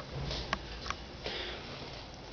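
A person breathing in sharply, like a sniff, close to a handheld microphone, with two small clicks about half a second apart in the middle.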